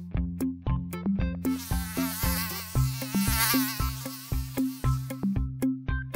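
Mosquito buzzing sound effect, a high whine that wavers in pitch, rising in about a second and a half in and dying away near the end, over background music with a steady rhythmic bass line.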